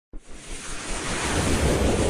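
Whoosh sound effect of a news channel's intro sting: a rushing noise with a low rumble that begins just after the start and swells steadily louder over about a second and a half.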